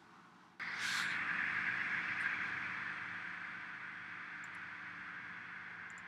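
A steady rushing noise, like a fan or air, that starts abruptly about half a second in and slowly fades, with a faint low hum under it.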